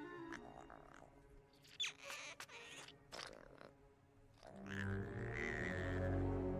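Soft film-score music with a few brief sound effects, including a short sliding squeak about two seconds in. The music swells louder and fuller from about halfway through.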